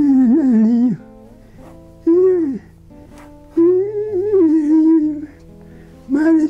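An elderly man's voice in three drawn-out phrases over soft instrumental background music with long held notes.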